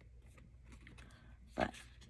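Faint, scattered rustling and light taps of paper stickers being handled and pressed onto a planner page, with a single spoken word near the end.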